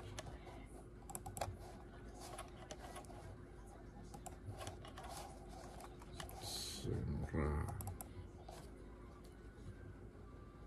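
Faint, irregular small clicks and taps, with a short low mumbled voice about seven seconds in.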